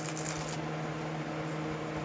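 Faint rustling and rubbing as a mini snow globe is turned over in the hands, with a few light clicks in the first half second, over a steady low hum.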